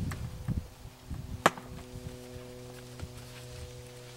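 Handling noise from a stove's carry bag and case: rustling, then one sharp knock about a second and a half in and a few light taps. A steady low hum runs underneath from about a second in.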